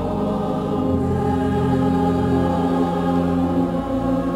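Church choir singing in long, held chords, with a change of chord about a second in.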